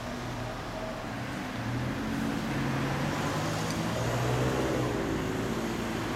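1996 Kawasaki Zephyr 1100RS's air-cooled inline-four idling through a BEET NASSERT aftermarket exhaust, a steady low note whose pitch drifts slightly up and down through the middle.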